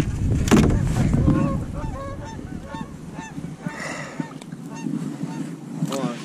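Geese honking in a rapid series of short calls, about three a second, for several seconds. Before the honks start there is a knock and some rumble in the boat.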